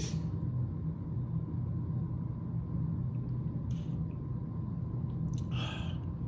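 A man tasting high-proof bourbon: a faint short sip a little past halfway, then a breath out near the end as the spirit goes down, over a steady low room hum.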